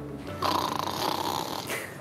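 A single snore, lasting about a second and a half.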